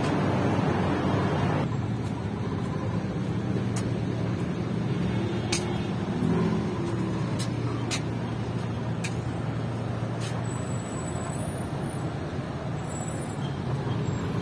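Street traffic with a steady low engine hum from idling vehicles, a louder rush of passing traffic in the first two seconds, a few sharp clicks, and short high-pitched beeps in the second half.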